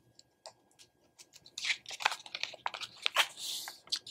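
Manila clasp envelope being closed by hand: paper rustling and a run of small clicks and scrapes as the flap is pressed down and the clasp worked, starting about a second in, with a longer rustle near the end.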